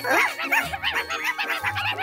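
Cartoon baby ladybirds making quick, high, puppy-like yaps in a rapid string, over light background music.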